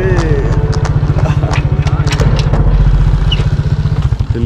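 A small motorcycle engine idling loudly and close by: a fast, even low putter, with people's voices over it.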